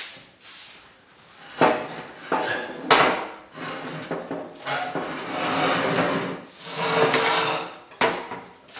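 Rusty steel plow bottom knocking and scraping against the plow frame and the concrete floor as it is worked loose and pulled free. There are two sharp knocks about one and a half and three seconds in, then longer scraping and rubbing through the second half.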